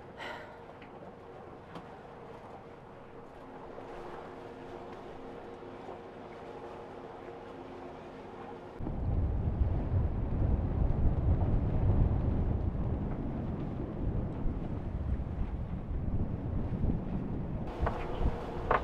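Wind buffeting the microphone aboard a catamaran under way at sea: a loud, low, gusty rumble that starts suddenly about nine seconds in. Before it there is only a quieter steady hum with a few held tones.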